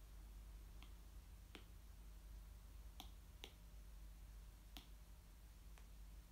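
Near silence with six faint, sharp clicks at irregular intervals, the small ticks of something handled close by.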